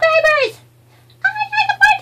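High-pitched, squeaky character voice making wordless babbling sounds in short choppy syllables, a person voicing a plush toy: one short burst at the start, then a longer run from just past a second in.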